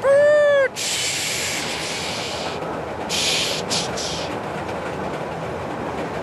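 A man imitating a steam train into a microphone over a PA: a short whistle-like hoot that rises and falls, then a loud hiss lasting about two seconds and a few shorter hissing puffs.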